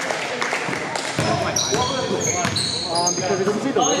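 Basketball game on a gym floor: the ball bouncing and knocking, with many short high-pitched sneaker squeaks on the hardwood starting about a second and a half in. The sound echoes as in a large hall.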